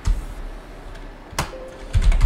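Computer keyboard key presses: one at the start and a sharp click about one and a half seconds in.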